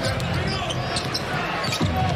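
A basketball being dribbled on a hardwood court, repeated bounces over steady arena background noise.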